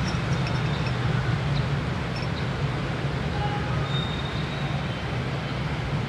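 Steady low background rumble with an even hiss over it, at an unchanging level.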